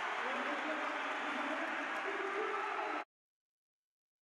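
Football stadium crowd noise: a steady din with faint, indistinct voices in it, cutting off abruptly about three seconds in.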